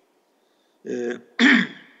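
A man's voice: a short hesitant 'ee', then about half a second later a short, louder burst of breath from the throat.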